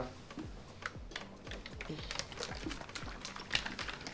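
Plastic water bottles being taken out of a pack and handled: scattered small clicks and crackles of plastic.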